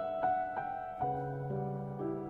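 Solo piano playing a slow, gentle melody, single notes struck every quarter to half second over sustained chords, with a low bass note coming in about a second in.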